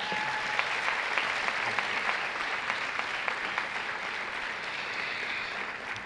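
An auditorium audience applauding: steady clapping from many hands that thins a little near the end.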